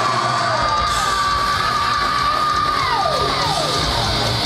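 Black metal band playing live, loud and dense. A long high note is held for about three seconds and then slides down in pitch near the end.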